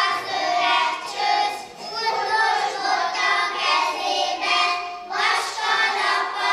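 A group of young kindergarten children singing together on stage.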